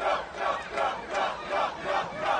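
Group of voices chanting together in a steady rhythm, about three shouts a second, cheering on someone to jump.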